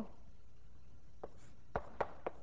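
Chalk on a blackboard as figures are written: two short, sharp taps about half a second apart, a little past the middle, over faint room hum.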